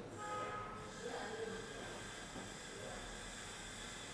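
Quiet, steady background hiss with a faint high electronic whine. A few soft, indistinct sounds come in the first second and a half.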